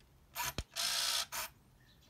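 Minolta Freedom Dual point-and-shoot film camera going through a shutter-release cycle. A short motor whir is followed by a sharp click just after half a second in, then a steady half-second motor whir and one brief final whir.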